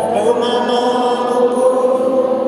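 Live pop song in a large church: voices holding long sung notes with accompaniment, the pitch settling just after the start and then held steady.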